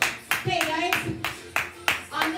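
Hands clapping in a quick, even rhythm, about four claps a second.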